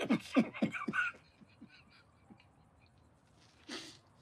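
Brief laughter from men in a small van cabin, quick short bursts for about a second, then a quiet stretch with a few faint clicks of spoons against soup bowls and a short breathy exhale near the end.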